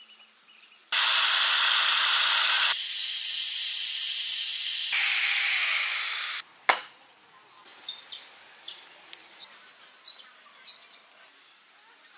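Corded electric chainsaw cutting into a log, running loud and steady from about a second in until about six seconds, its sound changing abruptly twice. A single sharp knock follows, then a string of faint short high-pitched scratches.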